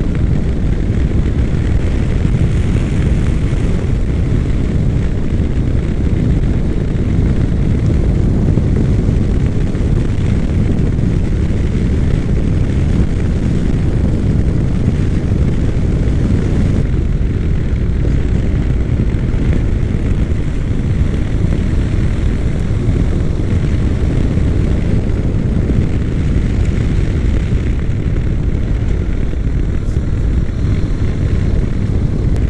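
Steady wind rush on a riding action camera's microphone over the running engine of a Honda NC700X motorcycle (a parallel twin) at road speed: a continuous, even, low roar.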